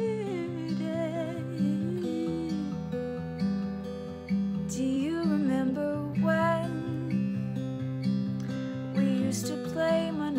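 Acoustic guitar strumming a slow, steady chord pattern, with a woman singing a gentle melody over it.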